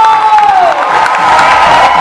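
Circus audience cheering and clapping loudly over music, with a long held tone that slides down in pitch about half a second in.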